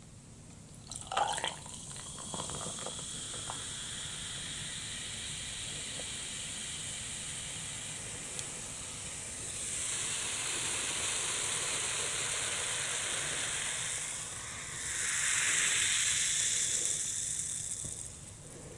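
Coca-Cola poured over ice into a glass mug: sharp cracks and clinks of the ice as the pour begins, about a second in, then a steady fizzing hiss of carbonation that swells louder twice, near the middle and again near the end.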